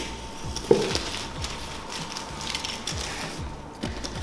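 Box cutter slitting the packing tape and cardboard of a shipping box, an uneven scraping that goes on in short strokes.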